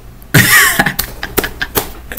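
A man laughing hard: one loud burst about a third of a second in, then a run of short, sharp breathy bursts.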